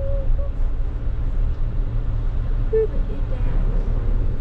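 Steady low rumble of a vehicle's engine and running gear heard from inside the cabin as it creeps forward slowly, with a couple of brief faint voice sounds.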